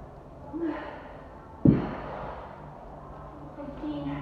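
A woman breathing hard in sharp gasps and exhales as she does kettlebell swings, with one loud thump about one and a half seconds in.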